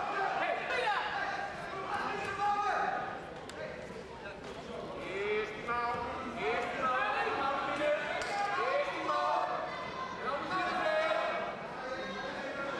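Several voices calling out and talking over one another in a large, echoing sports hall, with a few dull thumps among them.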